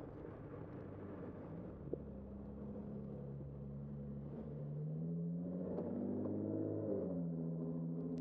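Street traffic heard from a moving bicycle: a steady rumble of road and wind noise, with a nearby motor vehicle's engine rising in pitch as it accelerates, loudest in the second half and dropping back in pitch about seven seconds in.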